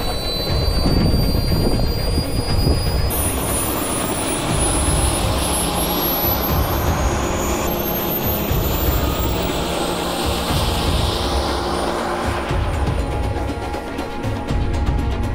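Jet-powered RC car's engine whine climbing steadily in pitch as it spools up and accelerates, over a heavy low rumble of gusty wind on the microphone.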